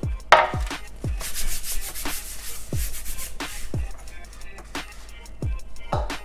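Background music with a deep bass-drum beat whose pitch drops on each hit, over the rubbing and rustling of kitchen things being handled. A sharp knock comes about a third of a second in.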